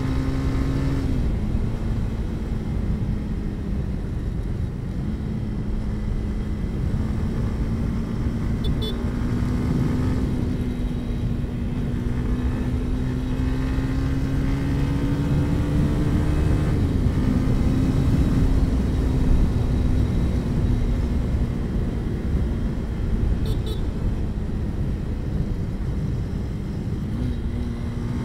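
Motorcycle engine running at cruising speed, heard through a helmet-mounted lavalier mic over a dense, steady low noise. The engine note drops about a second in, climbs slowly, drops again past the middle and rises near the end.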